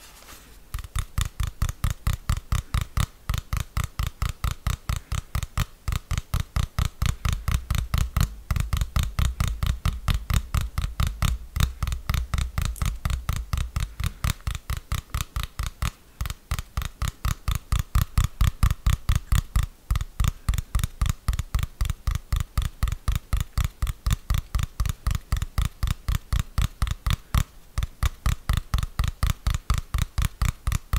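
Fingers tapping quickly and evenly on a plastic TV remote control held close to the microphone, about four sharp taps a second, with a few brief pauses.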